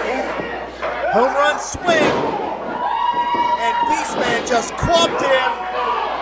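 Two heavy thuds of wrestlers' bodies hitting the ring canvas, about two seconds in and about five seconds in, amid a crowd shouting, including one long held shout.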